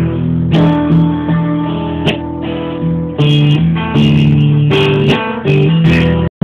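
Guitar and upright piano playing an instrumental passage together live, with sustained chords changing every second or so.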